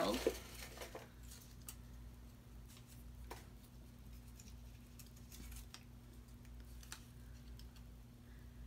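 Faint crinkling of a small folded paper slip being unfolded by hand, a few soft crackles over a steady low hum.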